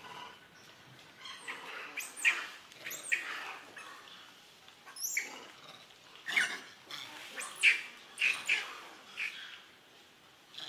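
Young long-tailed macaque giving a run of short, high calls, about nine in all, several sweeping sharply up and then down in pitch.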